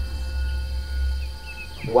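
A low, steady bass drone from the soundtrack, with a thin high insect trill like crickets above it and a few faint chirps about a second in.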